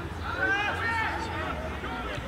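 A man calling out on a football pitch, a drawn-out shout with faint voices behind it and a low steady hum underneath.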